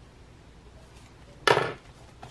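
Quiet room tone, then a single sharp knock about one and a half seconds in that dies away quickly.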